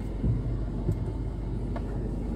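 Steady low rumble of a car's engine and tyres heard from inside the cabin while riding.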